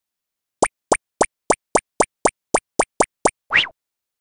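Cartoon sound effects for an animated intro: a quick run of eleven short pops, about four a second, then one slightly longer rising sound near the end.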